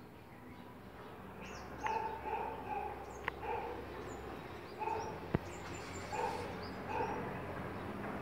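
A dog barking, short barks in irregular groups, with faint high chirps above and a single sharp click about five seconds in.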